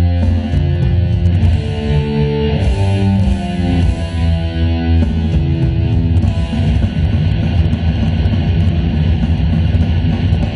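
Live heavy metal played loud: electric guitar carrying a melodic lead line of held, bending notes over a steady bass and drum backing, turning into denser, faster playing about halfway through.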